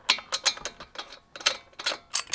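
Ratchet wrench on a socket extension clicking in short, irregular runs as a lug nut is tightened on a car wheel.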